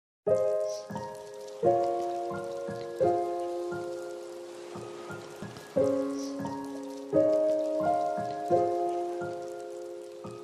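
Soft instrumental background music: sustained chords struck about every second and a half, each fading away, with lighter notes between them.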